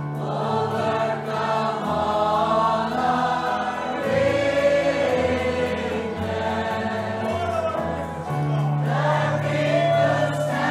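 A choir singing a worship song with instrumental accompaniment, voices holding long notes over a sustained bass line.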